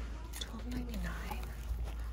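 Speech only: a woman quietly saying a price aloud, over a steady low background rumble.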